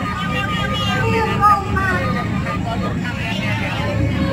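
A performer's voice over a stage loudspeaker, heard above crowd chatter and a steady low rumble.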